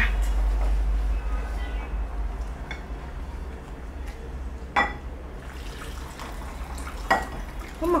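Metal ladle scooping freekeh soup out of a stainless steel pot into a ceramic bowl, with two sharp clinks of the ladle against the dishes, about five and seven seconds in, over a steady low hum.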